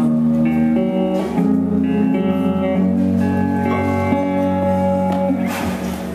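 Electric guitar and Nord Stage keyboard playing held chords in an instrumental passage between sung lines.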